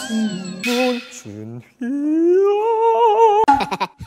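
A man singing a line in exaggerated musical-theatre style, ending on a long held note that climbs in pitch with vibrato, followed near the end by bursts of laughter.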